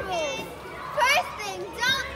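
Young girls' voices calling out in several short, high-pitched exclamations without clear words.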